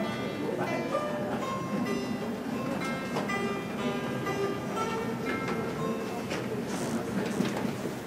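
Dan tranh, the Vietnamese plucked zither, played solo: a melody of single plucked notes, each ringing on and fading as the next is picked.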